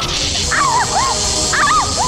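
Background score of swooping, warbling electronic tones that rise and fall several times a second over a steady hiss.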